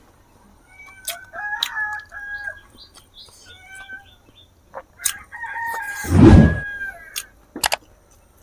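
Chickens calling: a few short calls between about one and two and a half seconds in, then a rooster's long crow from about five seconds in. A loud low thump about six seconds in, during the crow, is the loudest sound, and a few sharp clicks come near the end.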